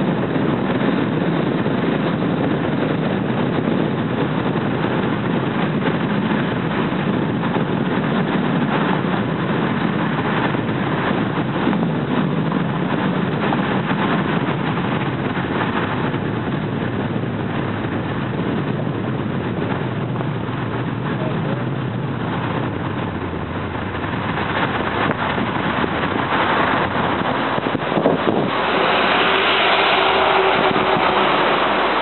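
Steady tyre and engine noise of a car driving along a road, heard from inside the car. Near the end it swells into a louder, hissier rush.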